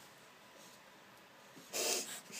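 A quiet room, then near the end a short, breathy snort of a person's breath.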